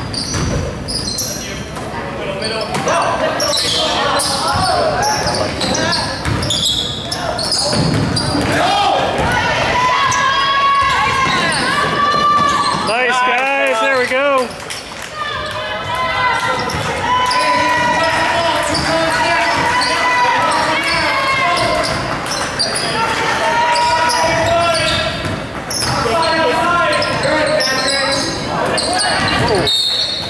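Basketball game in a large gym: a ball dribbling and bouncing on the hardwood court amid shouting voices, all echoing in the hall.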